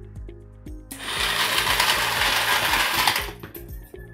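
Coin hopper motor running and ejecting thirteen coins in a rapid, dense clatter that starts about a second in and stops a little after three seconds. Background music plays under it.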